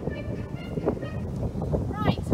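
Wind buffeting an outdoor microphone, a steady low rumble, with a few brief faint vocal sounds.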